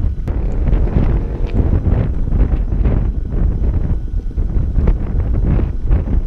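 Loud wind buffeting the microphone in uneven gusts.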